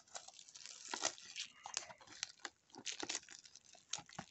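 Clear plastic shrink-wrap on a cardboard trading-card box crinkling and tearing as it is pulled off by hand, in irregular crackles.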